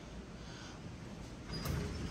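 Elevator doors beginning to slide open, starting about one and a half seconds in with a click as they start to move, over a low steady background hum.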